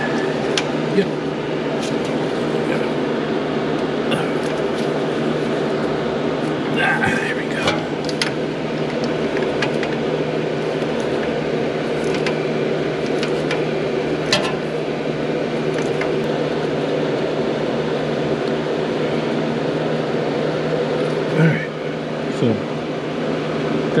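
Steady drone of an electric shop fan, with a few brief metallic clicks and taps from a wrench working the rear differential's pinion-shaft lock bolt.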